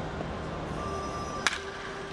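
A single sharp crack of a wooden bat hitting a baseball in batting practice, about one and a half seconds in, over steady stadium background noise.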